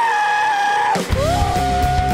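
A young man's long, held shout into a microphone. About a second in, loud rock music with guitar and drums starts suddenly, and another long held shout rings out over it.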